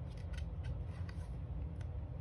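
A page of a thick cardboard board book being turned by hand: several short, light clicks and rubs of card and fingers, over a steady low hum.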